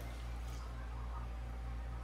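Water poured from a cup onto flour in a plastic mixing bowl, faint, over a low steady hum.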